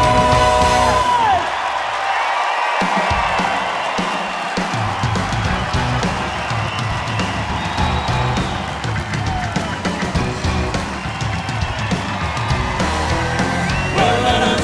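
Live gospel band music: a held vocal chord ends with a drop about a second in, then the band plays an instrumental break without singing. Audience cheering and whoops sit underneath.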